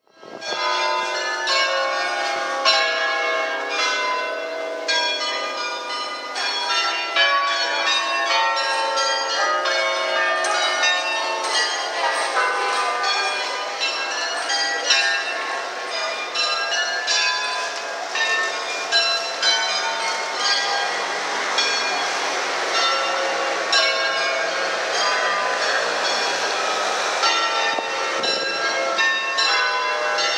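Bells ringing in a dense, overlapping peal, strike after strike with ringing tails, starting suddenly; a hiss-like wash of noise grows beneath them in the second half.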